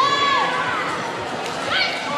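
Two short, very high-pitched children's shouts, a loud one at the very start that drops off at its end and a shorter rising one near the end, over the steady murmur of a crowd in a large hall.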